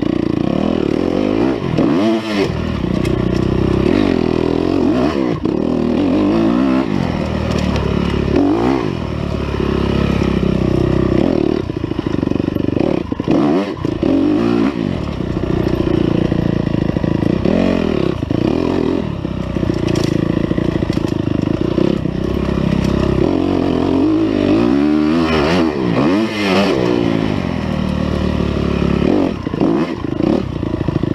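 Dirt bike engine revving up and down over and over as the bike is ridden on a rough woods track, the pitch rising and falling every second or two.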